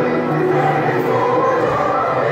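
A group of children singing a song together in chorus, the voices held on long notes.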